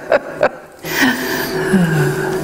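A woman's laughter trailing off in a couple of short breaths, then after a brief pause, indistinct voices talking.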